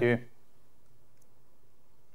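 A man's voice ending a spoken 'thank you', then quiet room tone with a faint, tiny click about a second in.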